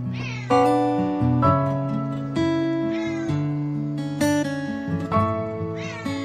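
Several Bengal kittens meowing in short calls that fall in pitch, heard over plucked-guitar background music.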